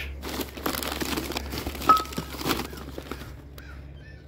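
Newspaper wrapping crinkling and rustling as glassware is handled and unwrapped. About two seconds in there is one sharp knock with a brief ring.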